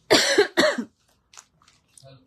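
A woman coughs twice in quick succession into her hand, two loud coughs within the first second.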